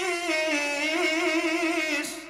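A man's voice holding one long sung note with a wavering vibrato through stage microphones, the pitch dipping slightly and then rising about a second in, and cutting off at the end.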